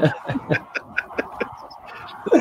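A man's quiet, breathy laughter: a run of short chuckles that fades away.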